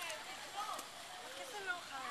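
Voices talking in the background, high-pitched and indistinct, with no clear words.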